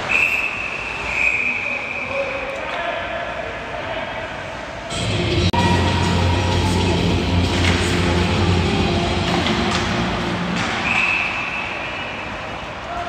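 Referee's whistle in an ice rink: a steady shrill tone for about two seconds at the start, blown again near the end. Between the two, a low steady drone runs for about five seconds.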